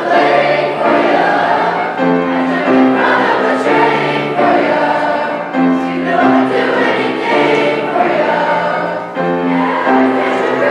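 A large mixed choir of children and young teenagers singing together, holding notes in chords that change every second or so.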